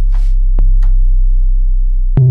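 Softube Model 82 software synthesizer (an SH-101 emulation) playing its 'Velocity Sine Sub' preset: a very deep, nearly pure sine-wave sub-bass note held steadily. The note is restruck on the same pitch about half a second in, with faint clicks at the note starts.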